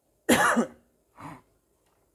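A man coughing: one loud, harsh cough about a quarter second in, then a softer second cough about a second later.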